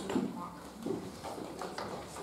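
Footsteps on a hard hall floor: a few irregular shoe knocks, with faint murmur in the room.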